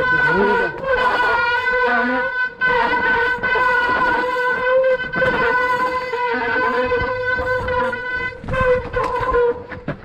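Mountain-bike disc brakes squealing in a steady, high-pitched tone while held on down a steep, wet trail, breaking off briefly a few times as the brakes are eased; wet rotors and pads are the usual cause of such squeal. Tyres rumble over dirt and roots underneath.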